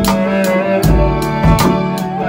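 A band playing live: a drum kit with cymbals keeps a steady beat under held notes from keyboard and other instruments, with a low bass line.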